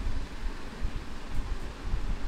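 Low, rumbling background noise on the microphone, with no speech.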